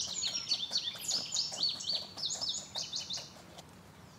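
A songbird singing a fast, jumbled run of high chirps and downward-sliding notes that stops about three and a half seconds in. Under it, the faint, evenly repeated rasp of a triangular file notching the edge of a box turtle's shell.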